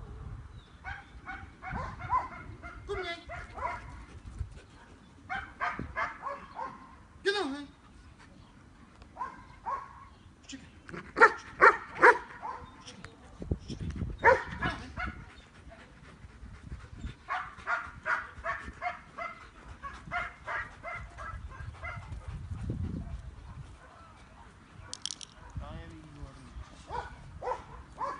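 German Shepherd barking in repeated runs of short barks, loudest about eleven to twelve seconds in.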